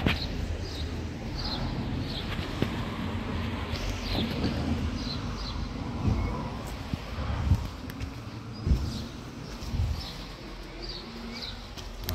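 Street ambience: a steady low rumble of traffic with small birds giving short high chirps every second or so, and a few soft low thumps.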